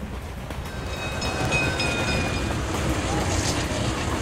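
Passenger train running, heard from inside the carriage: a steady low rumble that grows louder, with faint thin high tones over it for a second or so.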